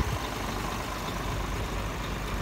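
Heavy diesel truck engine idling, a steady low rumble.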